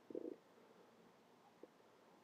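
Near silence, with one brief faint low murmur just after the start.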